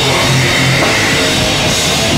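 Live heavy rock band playing loudly, with electric guitar and a drum kit.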